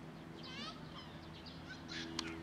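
Small birds chirping in short, repeated high calls, with one longer patterned call about half a second in.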